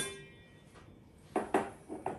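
Ringing of a metal sieve tapped against a stainless steel bowl to sift cocoa, dying away at the start, then after a short lull a few sharp clanks of metal kitchenware set down on the counter in the second half.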